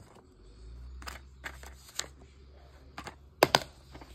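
Plastic DVD case being handled: scattered light clicks and rustles of the paper insert, then two sharp clicks close together a little past three seconds in as the case snaps shut.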